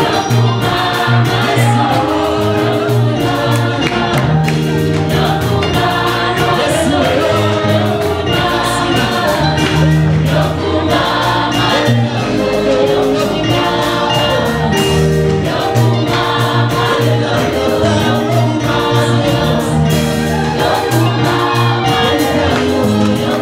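Live gospel worship music: a group of singers on microphones sings together over electronic keyboard accompaniment with a steady beat, played through a PA.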